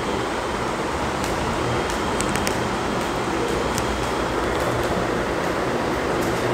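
Steady room background noise, a constant hum and hiss, with a few faint clicks about two seconds in.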